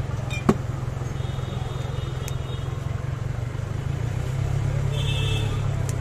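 Steady low rumble of street traffic, growing louder about four seconds in as a vehicle passes. There is a sharp click about half a second in and two brief high tones, one around the middle and one near the end.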